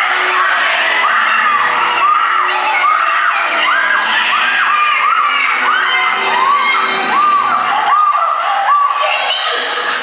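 A run of short, high-pitched screams, one after another, over music and a cheering crowd in a theatre.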